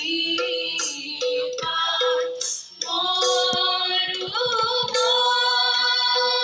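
Group of voices, mostly women's, singing a Borgeet (Assamese devotional song) together, accompanied by harmonium, khol drum and small taal cymbals.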